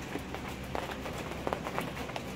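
Rain falling, individual drops tapping irregularly on nearby surfaces.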